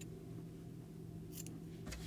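Scissors cutting the super bulky yarn to fasten off, a short snip about one and a half seconds in, over a faint steady hum.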